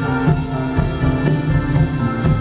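Live instrumental rock band playing: a drum kit with a cymbal struck about twice a second, over electric bass and keyboard notes.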